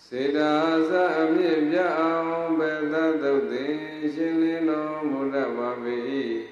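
A Theravada Buddhist monk chanting Pali verses solo, one male voice holding long notes that bend up and down. It begins abruptly.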